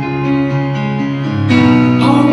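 Yamaha CP4 stage piano playing sustained chords live through the PA; a louder, fuller chord comes in about a second and a half in.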